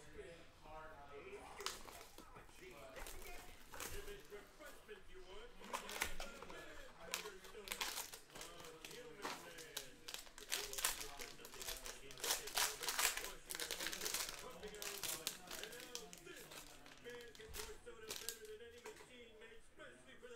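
Trading-card box and foil pack wrapper being opened by hand: irregular crinkling, tearing and rustling, with quick clicks as the cards are handled, busiest in the middle of the stretch.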